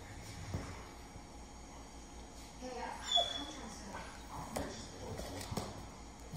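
A dog gives a brief high whine about three seconds in, amid soft scuffling and knocks of paws on a corduroy bean bag as a puppy clambers onto it.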